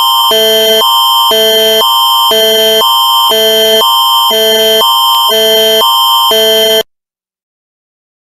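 Canadian Alerting Attention Signal of the Alert Ready emergency alert system: loud electronic tones that switch every half second between a higher chord and a lower chord over a steady high tone. It cuts off abruptly about a second before the end.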